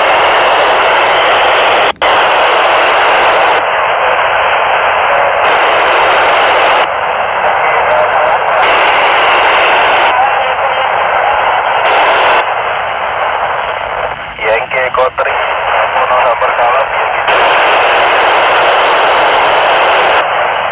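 Handheld FM transceiver's speaker hissing loudly with the noisy satellite downlink. The hiss briefly drops out about two seconds in, and faint, broken voices of other stations come through about three-quarters of the way in.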